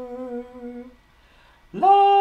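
A voice humming a held low note that fades away about a second in; after a short pause a new, higher note slides up into place and is held.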